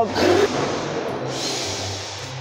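Background music, with a short hissing whir near the end from an electric RC monster truck being driven on a test run. The truck's motor pinion is loose.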